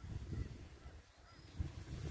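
Low, gusty rumble on the microphone that drops away about a second in, with a few faint short calls of birds from the wetland.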